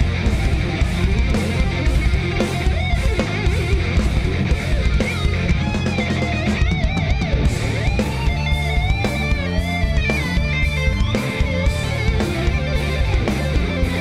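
A progressive metal band playing live: a fast electric guitar lead over drums and bass, with a high line that bends and wavers from about halfway in.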